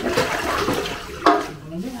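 Water running from a wall tap and splashing into a basin as something is washed by hand, the splashing thinning out in the second half.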